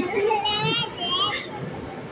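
A toddler's high-pitched, wavering voice: two short vocalizations without clear words.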